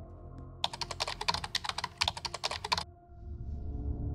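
A rapid run of sharp clicks, about ten a second, lasting about two seconds from just under a second in, over low background music.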